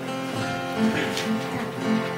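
Acoustic guitar strummed in an even rhythm, playing the introduction to a hymn before the singing begins.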